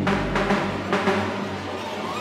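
Background music with drum hits; the deep bass drops away about halfway through.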